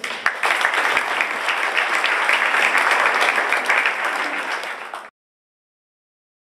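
Audience applauding, a dense run of many hands clapping that cuts off suddenly about five seconds in.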